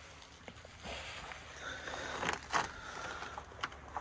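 Faint rustling and a few light knocks and shuffles of someone moving about inside a van's cabin, over a low steady background hum.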